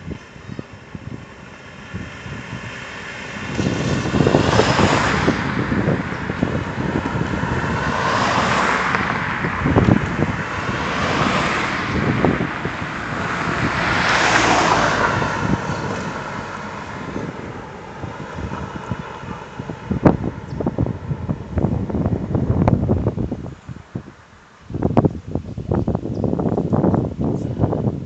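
Cars passing on an asphalt road, their tyre noise swelling and fading several times over a dozen seconds. Later, wind buffets the microphone in crackly gusts.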